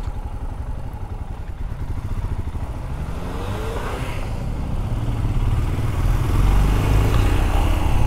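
Royal Enfield Scram 411's single-cylinder engine running as the motorcycle rides on through slow traffic, its sound growing louder over the last few seconds as it picks up speed.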